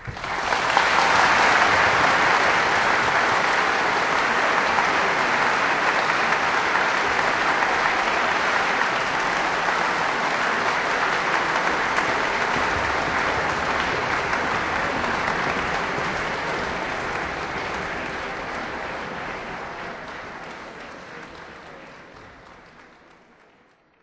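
Audience applauding right after the final chord of a Baroque concerto, starting suddenly, holding steady, then dying away over the last several seconds.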